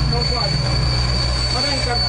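Heavy machinery running steadily on a construction site, most likely the diesel engine of a truck-mounted concrete pump, with a continuous high-pitched squeal held at one pitch above it.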